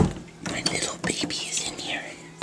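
Soft whispering by a person, with a low thump right at the start.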